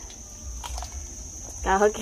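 A steady high-pitched insect drone with a low hum underneath and a few faint clicks, then a voice exclaims "Trời" near the end.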